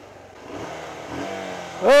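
A small motorcycle's engine running and briefly revving as the bike pulls up, its clutch slipping. A voice calls out "ah!" at the very end.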